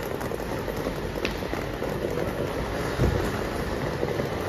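Steady, even background hiss of a railway station concourse heard while walking through it, with a soft low thump about three seconds in.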